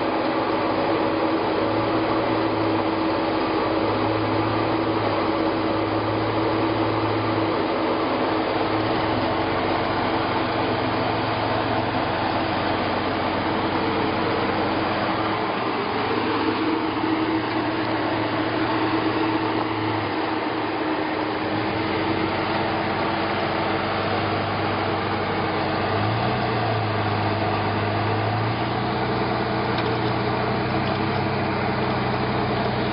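Jeep Wrangler engine running at low revs as the Jeep crawls over rock: a steady drone whose lower note steps up and down a little several times as the throttle is feathered.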